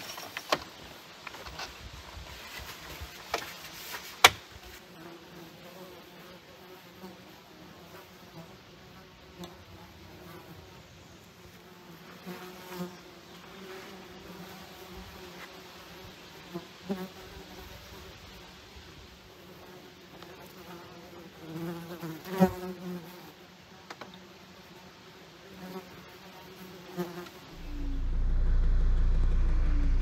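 Flying insects buzzing around, their drone wavering as they come and go, with sharp knocks and clicks from camp gear being packed. A low steady rumble comes in near the end.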